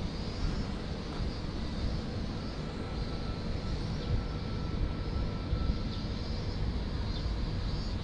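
Steady outdoor background rumble with a hiss over it, without any distinct event.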